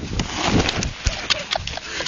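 Handling noise from a handheld camera being jostled and swung about: rustling and repeated short knocks, with brief fragments of a voice.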